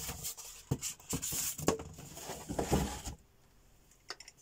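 Handling noise: knocks and rustling as a small plastic sewing machine is picked up and moved, stopping about three seconds in.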